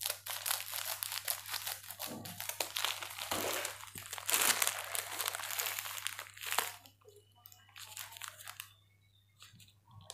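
Plastic packaging of a pack of wax strips crinkling and rustling as it is handled and pulled open, busy for the first seven seconds, then fainter, scattered crackles.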